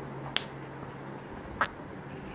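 Two short, sharp clicks about a second and a quarter apart, over a steady low hum.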